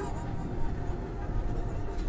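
Extreme E electric racing SUV driving on a loose dirt track: a steady low rumble of tyres on gravel and the drivetrain, with no engine note.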